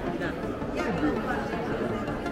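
Chatter of several people talking at once, shoppers and stallholders in an indoor market hall.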